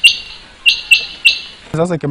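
Decoy quails calling to lure wild quails to the trap: sharp, high call notes, one right at the start, then a quick three-note phrase from about two-thirds of a second in.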